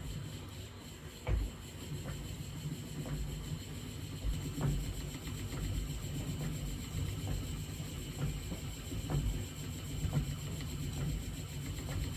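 Wooden spinning wheel being treadled while yarn is spun onto the bobbin: a low steady rumble with faint clicks about twice a second.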